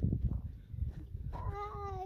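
A single drawn-out animal cry that starts a little past halfway through and sags slightly in pitch as it goes, over a steady low rumble with a few scattered knocks.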